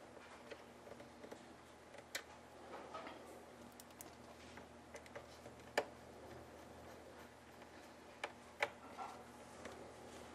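Faint scattered clicks and taps of a small screwdriver driving screws into a laptop's plastic top case. The sharpest click comes a little before six seconds in, and two more come close together near the end.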